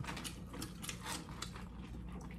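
Close-miked eating sounds: a person chewing French fries, heard as a quick irregular run of small crisp clicks and smacks, over a steady low hum.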